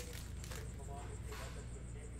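Faint rustle of a torn foil trading-card pack wrapper and cards sliding out of it, heard as two soft swishes over a low steady hum.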